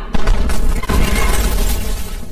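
A sudden loud crash with shattering and breaking debris and a deep rumble, a second hit about a second in, then the noise dies away. It is a blast that cuts off the phone call.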